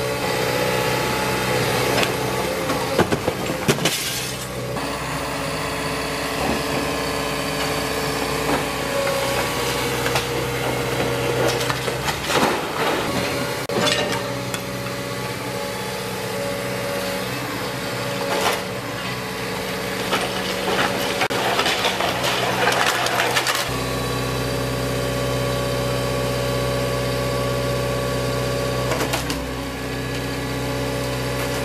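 JCB tracked excavator's diesel engine running as its hydraulic demolition grab tears into a brick house's roof, with cracking timber and falling brick and tile several times, loudest a few seconds in and again past the middle. Near the end the crashing stops and the engine settles to a steady, even note.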